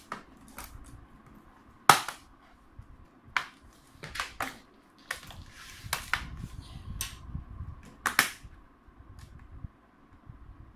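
Plastic bottom cover of an Acer Aspire F 15 laptop being pressed back on by hand, its clips snapping into place in a series of sharp clicks, the loudest about two seconds in and a quick pair near the end.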